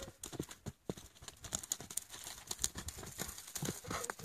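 Hoofbeats of a Tennessee Walking Horse gelding moving quickly under a rider over a dry dirt arena, a rapid, uneven run of thuds and clicks.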